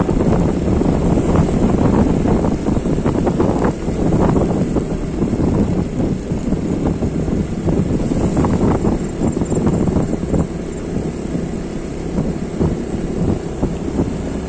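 Wind buffeting the microphone of a camera on a moving vehicle, a loud, gusty rumble over the vehicle's steady running noise on a wet road.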